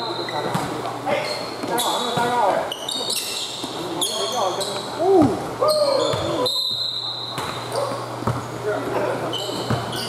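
A basketball bouncing on a hard indoor court during play, with short, high sneaker squeaks and players' voices calling out.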